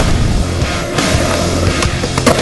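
Skateboard wheels rolling on pavement, with a few sharp clacks of the board, over background music.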